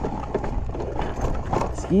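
Boots crunching in packed snow in irregular footsteps, over a steady low rumble.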